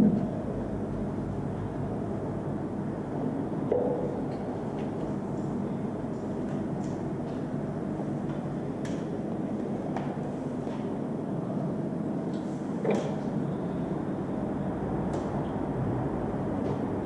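Steady low room noise with a few faint, scattered clicks and knocks.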